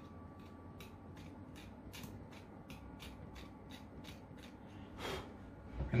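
Scalpel blade scraping a casting mark off the plastic of a 9x9x9 V-Cube piece, faint quick strokes about four a second, shaving the burr flat so the sticker can sit flat. A louder, longer noise comes about five seconds in.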